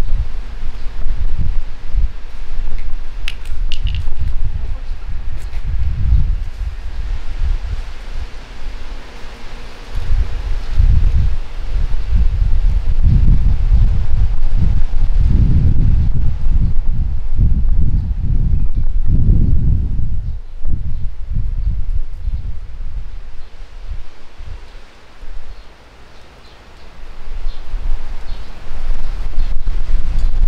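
Gusty wind buffeting the microphone in uneven low rumbles, with the surrounding trees rustling. The gusts ease briefly near the end.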